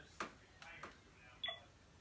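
Faint clicks of a camcorder's buttons being pressed, then one short electronic beep from the camcorder about one and a half seconds in.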